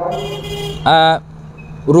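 A motor vehicle passing on the street, heard as a burst of road noise in the first second over a steady low hum, followed by a single brief spoken syllable.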